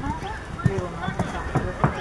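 A horse cantering on sand arena footing: three dull hoofbeat thuds a little over half a second apart.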